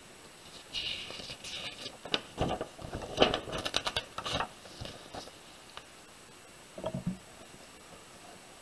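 Pages of a spiral-bound paper book being turned by hand: paper rustling and scraping for a few seconds, with a quick run of crisp ticks midway through.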